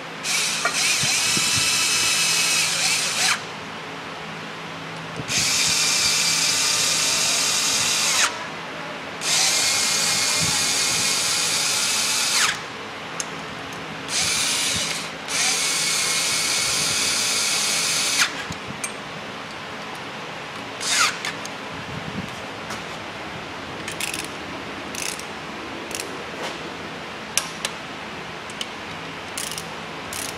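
Cordless power ratchet running bolts down into an engine, in four whirring bursts of about three seconds each with short pauses between. From about two-thirds of the way in, only scattered light clicks and taps of hand tools and sockets remain.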